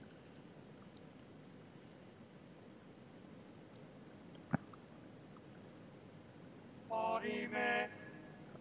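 Faint tapping of a computer keyboard as a search word is typed, then a single sharp click about four and a half seconds in. Near the end a man's voice gives a short hum.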